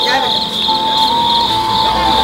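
Insects shrilling in a steady, high-pitched, pulsing chorus, with a steady lower tone running beneath it.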